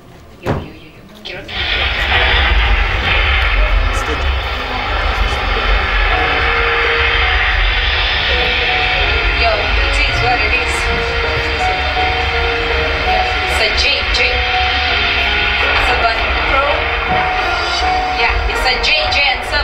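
Loud amplified music through the hall's PA system mixed with crowd noise, starting suddenly about a second and a half in and holding steady, with a booming low end and sustained notes.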